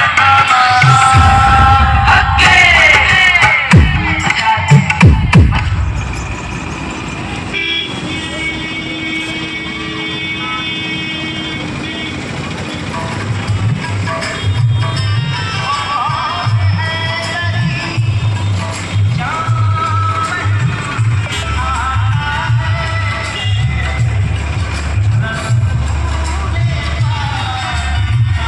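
Loud music with singing over street traffic, then a vehicle horn held for about four seconds. From about halfway on, a heavy, steady bass beat from a DJ truck's loudspeaker stack takes over.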